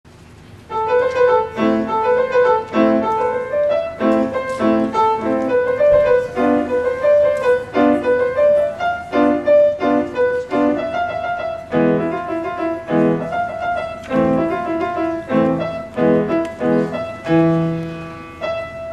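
Grand piano played solo: a melody in the upper notes over regularly repeated lower chords, starting just under a second in.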